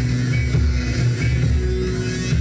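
Live rock music played by a band on stage, with a heavy bass line.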